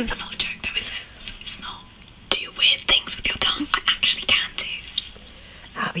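A woman whispering close to a microphone in ASMR style, in short breathy phrases broken by small clicks.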